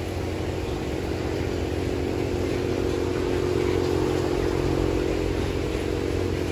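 Steady low mechanical hum of running machinery: a constant drone with several held tones, unchanging throughout.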